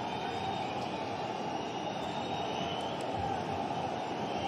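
Football stadium crowd: a steady roar from the away supporters with faint whistles, protesting the referee's decision to wave play on after a tackle.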